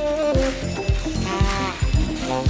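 Live jazz-funk band music: saxophone lines with held and bending notes over drums keeping a steady beat.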